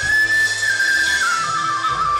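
A transverse flute plays a long, clear high note, then steps down in a short descending run through the second half, over a live band.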